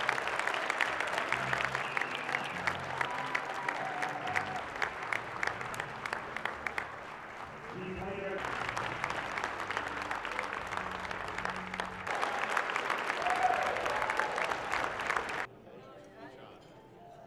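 An audience applauding, a dense patter of many hands clapping, which stops abruptly near the end.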